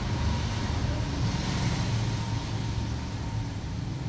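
Street traffic noise: a steady low vehicle rumble with a hiss of passing traffic.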